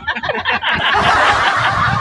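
Men laughing together: a quick run of short chuckles, then a louder stretch of overlapping laughter.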